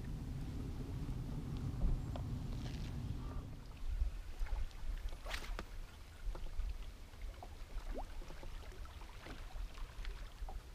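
Ambient sound aboard a bass boat on open water: a low steady hum for the first few seconds, then a lower, gusting rumble of wind on the microphone with a few faint short sounds.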